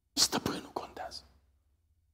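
A man says a short, breathy, half-whispered phrase lasting about a second, with prominent hissing consonants, after which only faint low room hum remains.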